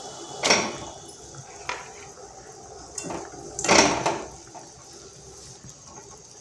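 Two blocks of Maggi instant noodles dropped one after the other into boiling water in a metal kadhai: two short splashing bursts about three seconds apart, with a couple of faint knocks between.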